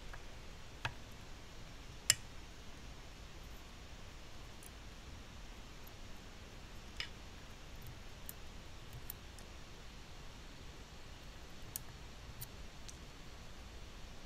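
A few small, faint clicks scattered over a quiet background as a small spring is hooked back onto the solenoid arm of a Beogram 4000 tonearm mechanism; the sharpest click comes about two seconds in, another about seven seconds in.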